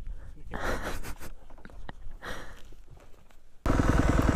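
Quiet outdoor sound with a faint low rumble and a couple of soft breathy swells. Shortly before the end it cuts abruptly to a dirt bike engine running loud, with a rapid firing pulse.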